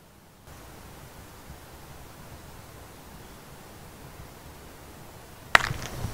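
Steady, even outdoor hiss. About five and a half seconds in, a sharp crackle and rustle of footsteps on the dry forest floor, the first snap the loudest.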